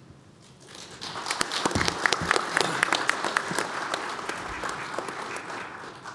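Audience applauding in a conference hall, many hands clapping, building up in the first second and fading away near the end.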